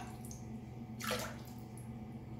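A handmade popper lure twitched across the water in a filled sink, making one short splash about a second in.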